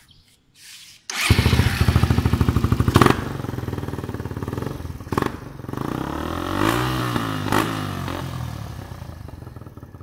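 Carburetted Suzuki Raider 150 single-cylinder engine with an aftermarket chicken-pipe exhaust starting about a second in, then revved briefly a few times with one rise and fall in pitch before settling toward idle, getting quieter near the end.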